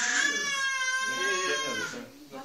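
A young child crying: one long, high, steady wail of nearly two seconds, louder than the talk around it.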